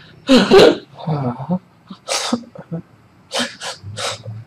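A man exhaling forcefully in short breathy bursts, some with voice in them. The loudest comes about half a second in, then shorter ones at about one and two seconds, and two quick ones near the end.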